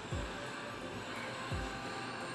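Steady background hum and whir of a running freezer, with two soft low knocks in the kitchen.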